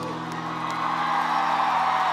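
The band's final chord rings out and fades while a concert crowd cheers and whoops, the cheering swelling about a second in.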